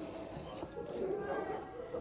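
A low, indistinct voice murmuring, too faint for words to be made out.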